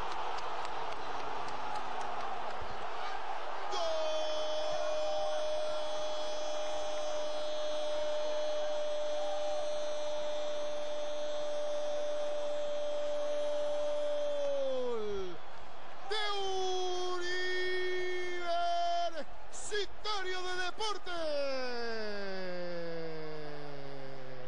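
Football commentator's drawn-out goal call, a "gooool" held on one pitch for about eleven seconds before it drops away, followed by shorter shouts that slide down in pitch. Stadium crowd noise runs underneath, strongest at the start.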